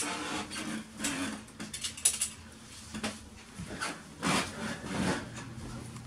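Handling noise from a handheld camera carried by someone walking through rooms: scattered soft rustles, scuffs and light knocks, over a faint steady low hum.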